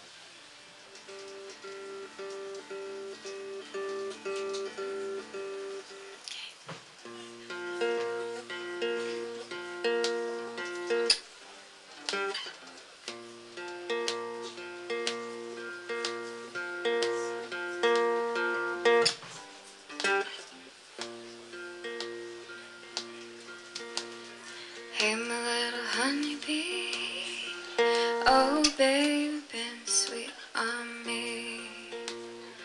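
Twelve-string acoustic guitar fingerpicked in a repeating pattern of notes as a song's introduction. It starts softly and gets louder from about eight seconds in. Near the end a voice joins with a few sliding notes.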